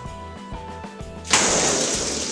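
Air rushing out of the open neck of a released balloon rocket as it shoots along its string: a sudden loud hiss starting a little over a second in. Background music with a steady beat plays underneath.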